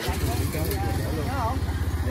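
Motorbike engine idling close by, a low, even rumble, with people talking over it.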